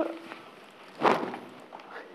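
Handling noise at a lectern microphone: a sharp knock at the start, then a louder rustling thump about a second in, as a lecturer moves at the lectern and laptop.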